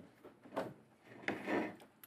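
Forks clicking and scraping on plates as slices of cake are cut, a few soft separate clicks and scrapes.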